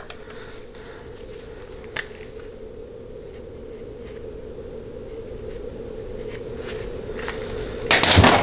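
A single sharp click about two seconds in, the cap coming off a felt-tip marker, over a steady low workshop hum that slowly grows louder; a few faint ticks come near the end.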